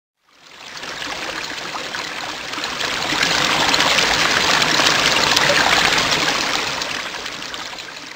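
Trickling, flowing water sound effect with a fine crackle. It fades in over the first second, is loudest around the middle and tapers off near the end.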